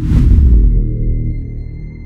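A deep, loud cinematic boom that hits at the start with a short hiss, then slowly fades into a low dark drone with a thin high whine held above it.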